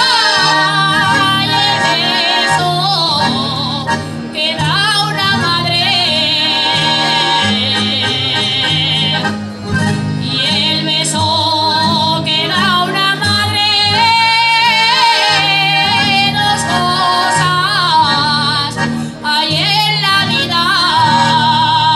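A woman singing an Aragonese jota solo at full voice, with long held notes, wide vibrato and ornamented slides, over guitars strumming chords in a steady rhythm.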